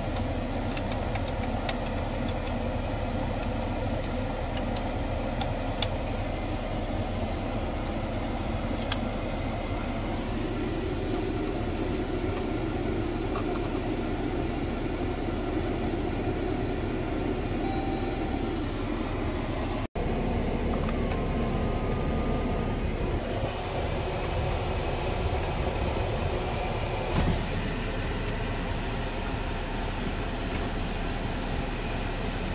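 Steady hum of a 2012 Jeep idling, heard from inside the cabin with the climate-control fan running. A few light clicks of dashboard buttons come in the first seconds, and the sound drops out for an instant about two-thirds of the way through.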